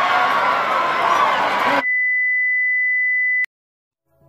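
Crowd noise from spectators at an outdoor football match, cut off abruptly just under two seconds in. It gives way to a steady, high electronic beep, one pure tone about a second and a half long that ends in a click and then silence.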